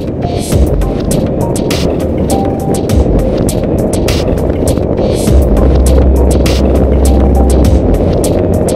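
Background music over the steady rush of a motorcycle ride at highway speed. A deep bass note comes in about five seconds in and holds almost to the end.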